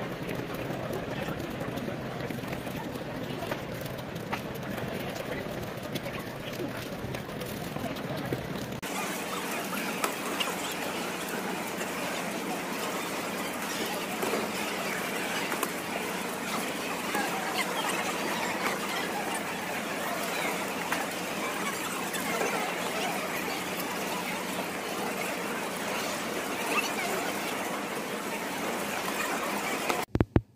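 Steady hubbub of many voices in a large hall, played back sped up. The background changes abruptly about nine seconds in.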